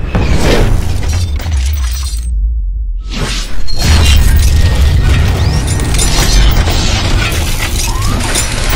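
Cinematic logo-intro sound effects: shattering, crashing hits over deep bass and music. The highs drop away briefly about two seconds in, then a loud hit lands at about three and a half seconds as a fiery burst fills the picture.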